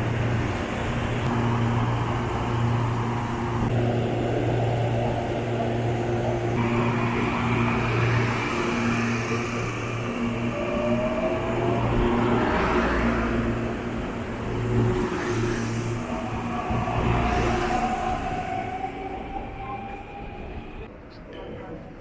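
Electric commuter train (CPTM Line 8-Diamante EMU) pulling out of the station. A steady low electrical hum is joined twice by a whine that rises in pitch as the train gathers speed, and the sound fades near the end.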